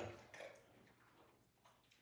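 Near silence: room tone, with the end of a spoken word at the very start and one faint, short sound about half a second in.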